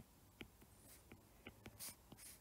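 Faint ticks of a stylus tapping and sliding on a tablet's glass screen while a word is handwritten: several light clicks, then a short scratchy stroke near the end.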